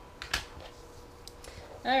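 A few light clicks and taps of hands handling a freshly cut fabric square and strip on a rotary cutting mat, the sharpest about a third of a second in.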